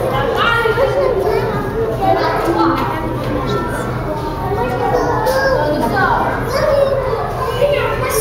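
Many children's voices chattering and calling out at once, overlapping in a large echoing hall, over a low steady hum.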